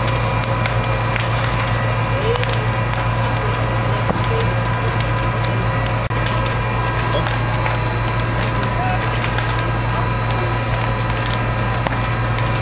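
Burning wood crackling and popping in the roof of a farmhouse on fire, with many short sharp cracks over a steady low engine drone.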